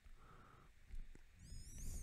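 Faint taps of a stylus on a tablet in a quiet room. Near the end comes a brief high-pitched wavering chirp, a little under a second long.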